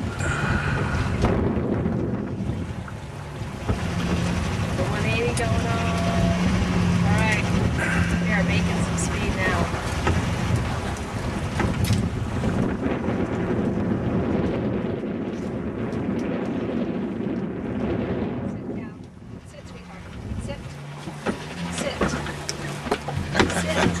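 Wind buffeting the microphone aboard a small sailboat under sail in a stiff breeze, a steady low rumble that eases briefly about nineteen seconds in.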